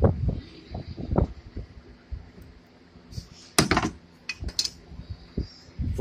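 Handling noises: irregular knocks, rumbles and rustling as someone moves about on cardboard and handles the phone, with a sharp click about three and a half seconds in and a few more shortly after.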